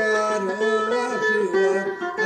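A man singing a Turkish folk song (türkü) to his own playing on an amplified bağlama (saz). The plucked strings ring under his wavering voice.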